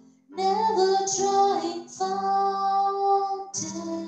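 A woman singing a slow worship song into a microphone in long held notes over a soft sustained accompaniment. She breaks for a breath and starts a new phrase about two seconds in and again near the end.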